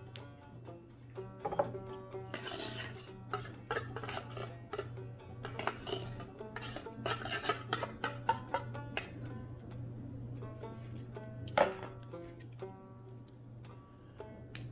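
Banjo music playing, a quick run of plucked notes over a steady low hum. There is one louder sharp hit about eleven and a half seconds in.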